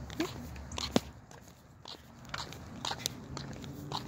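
Irregular light clicks and scuffs of footsteps in sandals on a concrete sidewalk, mixed with the rustle and knocks of a hand-held phone, with one sharp knock about a second in.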